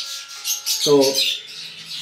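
Steady high-pitched chirping and chatter of many caged birds, with a man saying one short word about a second in.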